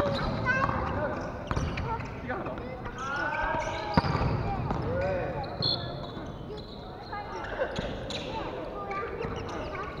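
Volleyball spiked at the net: a sharp slap of hand on ball right at the start, then another sharp hit of the ball about four seconds in.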